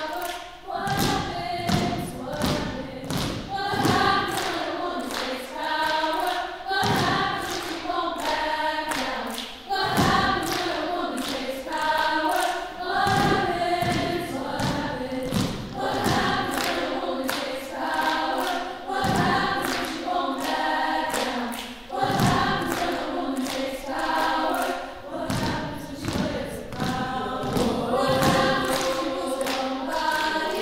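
Women's choir singing, with sharp thumps landing in time with the song throughout.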